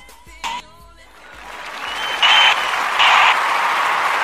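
Music fading out, then applause swelling in from about a second in and rising to loud surges roughly every second, with a short high whistle near the middle.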